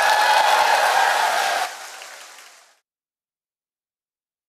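A large indoor audience applauding with some cheering voices, dropping away sharply a little under two seconds in and fading out completely by about three seconds.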